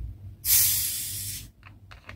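Pressurised gas hissing out as the cap of a plastic bottle of fermented tepache is loosened. The loud hiss starts suddenly about half a second in, eases slightly, and cuts off after about a second. It is the sign of a fizzy, well-carbonated ferment.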